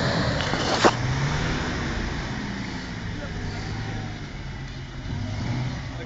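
Toyota Hilux pickup's engine revving under load as its wheels spin in mud, with a sharp knock a little under a second in.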